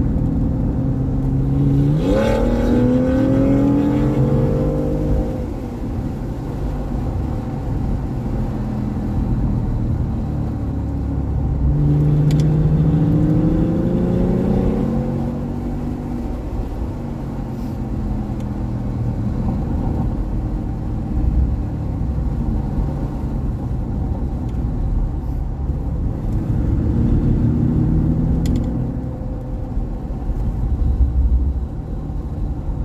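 Porsche engine heard from inside the cabin, pulling up through the revs three times with a rising pitch (about two seconds in, around twelve seconds, and near the end), over steady low road and tyre rumble.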